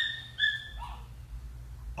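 Dog whimpering: two short, high whines in quick succession, then a fainter one falling in pitch.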